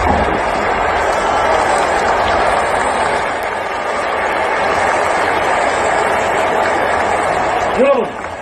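A large crowd applauding and cheering, a dense, steady wash of clapping and many voices at the end of a fireworks show. A single nearby voice breaks in just at the end.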